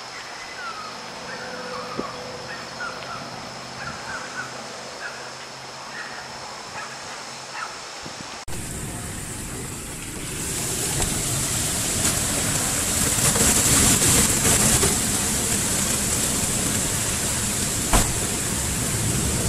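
Quiet night ambience with a faint steady high tone and scattered short chirps. About eight seconds in it cuts to the steady hiss of heavy wind-driven rain, which grows louder a couple of seconds later.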